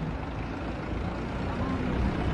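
Street traffic: a steady low rumble of car engines and tyres, with indistinct voices underneath.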